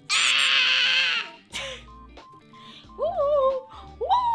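Edited meme sound effects: a loud, noisy burst lasting about a second at the start, a click, then about three seconds in a short squeaky cartoon-creature call that rises and then falls in pitch.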